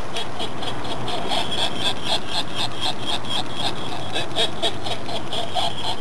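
A laughing voice, cackling in quick, even pulses, about four a second, that keeps going without a break.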